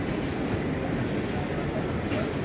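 Steady low rumbling hall ambience, with a dense murmur of noise and no distinct voices or machine strokes standing out.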